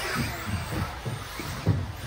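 Electric RC buggies racing on an indoor track: a run of short, dull low thumps, irregular and several a second, over a faint steady hiss of tyre and motor noise.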